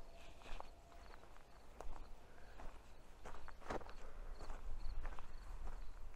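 Irregular footsteps scuffing over stony, gravelly ground, with the heaviest steps about two-thirds of the way through, over a steady low rumble.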